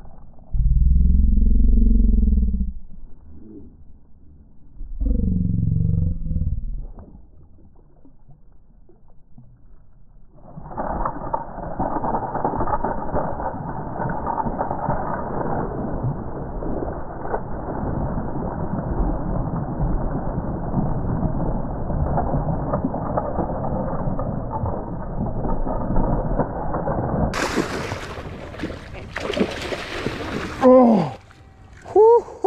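Muffled splashing and thrashing of a hooked musky fighting at the water's surface: two deep surges in the first seven seconds, then a long stretch of rough, continuous churning. About 27 seconds in the sound turns clear and bright with splashing water.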